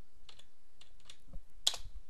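Keystrokes on a computer keyboard: a few soft key taps, then one louder key press near the end.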